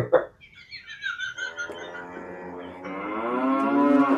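A cow mooing: one long, drawn-out moo that starts about a second in and rises slightly in pitch and loudness as it goes.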